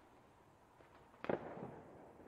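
A single firework bang about a second in, with its echo trailing off for half a second, preceded by a couple of faint distant cracks.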